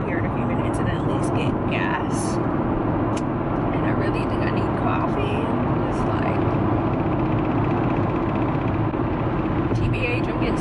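Steady road and engine noise inside a moving Toyota Camry's cabin at highway speed, a constant rumble and hiss, with a woman's voice faintly over it.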